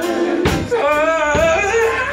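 Live old-school gospel singing into microphones: sung voices holding and bending notes over a band, with drum strikes keeping a steady beat about twice a second.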